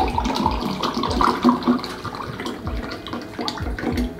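Nitro cold brew coffee poured hard from two upended glass bottles into tall glasses, splashing and gurgling as the glasses fill. The hard pour releases the nitrogen so the coffee builds a foamy head.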